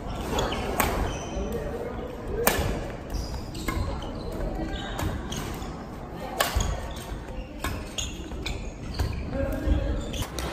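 Badminton racket striking a shuttlecock with sharp cracks every second or two, amid quick footwork: sneakers squeaking and thudding on a wooden gym floor, echoing in a large hall.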